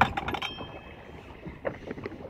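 A quick cluster of knocks in a small open boat, then steady wind and water noise with a couple of faint knocks near the end.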